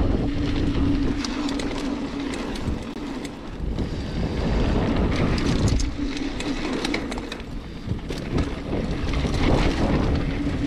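Mountain bike riding down a dirt trail: wind buffeting the camera microphone over tyre noise, with frequent short clatters and rattles from the bike over bumps. A steady buzzing tone runs at first, drops out a couple of seconds in, and comes back around the middle and near the end.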